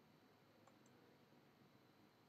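Near silence: room tone, with a couple of very faint clicks a little under a second in.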